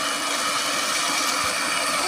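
A small engine running steadily, a continuous even hum.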